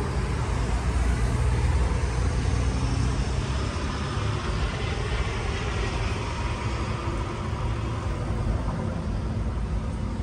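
Steady street traffic noise, a rumble of passing vehicles that swells a little in the middle.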